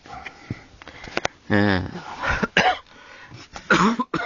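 Short, indistinct voice sounds with wavering pitch, three brief bursts, along with a few light clicks.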